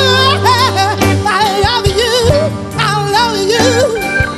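A live rock band playing. A lead voice or instrument wavers in wide vibrato over a steady bass line and drum strokes.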